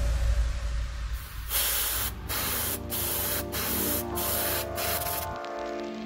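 Airbrush spraying paint through a comb held over a crankbait as a stencil: a loud hiss in about six bursts broken by short pauses, stopping about a second before the end.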